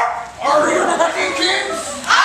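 A group of young people's voices calling out and singing together unaccompanied, fairly high-pitched, loud after a short dip about half a second in.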